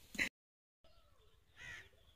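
A single short, faint bird call about one and a half seconds in, heard over quiet outdoor ambience. Just before it, a laugh is cut off abruptly at the start.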